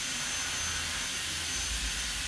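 Steady background hiss of room noise with a faint, steady high-pitched whine, in a pause with no speech.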